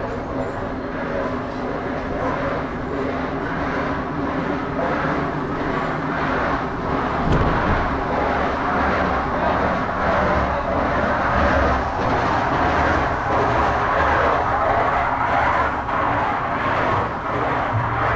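A motor vehicle's engine running steadily. It grows a little louder through the middle and eases off near the end.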